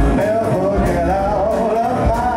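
A man singing a sustained, wavering melody line with vibrato into a microphone, over live band accompaniment with bass and drums.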